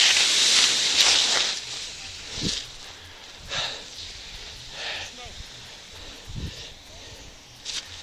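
Skier's body and skis sliding over icy snow after a fall, a loud scraping hiss that fades out about a second and a half in as the slide stops. After that, only quiet rustling in the snow with a few brief soft scuffs.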